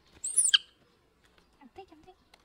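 A baby monkey gives one short, loud, high-pitched squeal that sweeps sharply down in pitch, followed near the end by a few faint, short, lower sounds.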